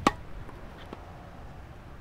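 A tennis racket striking a ball with one sharp pop, followed about a second in by a much fainter tap as the ball meets the strings of a soft drop-shot volley.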